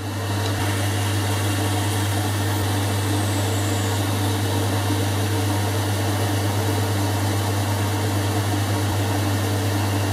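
Boxford lathe running steadily with a constant motor hum while a twist drill in the tailstock chuck bores into the end of a spinning metal bar.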